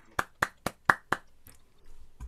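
Hand claps coming through a Zoom video call: a quick, even run of claps, about four a second, that stops a little over a second in.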